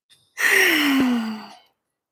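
A woman's long, breathy sigh, falling in pitch, as she breathes out after a set of ten push-ups.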